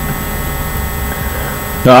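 Steady electrical mains hum with a layer of hiss, the constant background noise of the recording, unchanging throughout. A man's voice starts right at the end.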